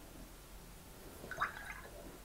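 Watercolour brush rinsed in a jar of water: a short, faint swish of water a little past halfway through.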